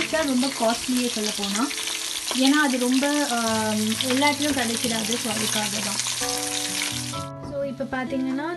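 Sea bass and salmon shallow-frying in hot oil in a pan, a steady dense sizzle that cuts off suddenly near the end.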